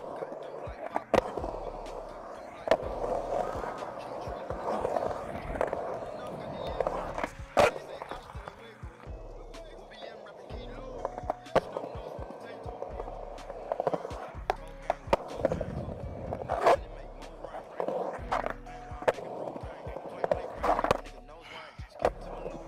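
Skateboard wheels rolling on smooth concrete as the board carves around a bowl, a continuous rolling rumble broken every few seconds by sharp clacks of the board and trucks.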